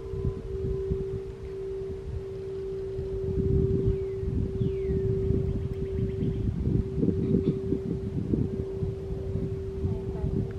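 A singing bowl holding one steady, sustained tone, with a low, uneven rumble beneath it that grows louder about three seconds in.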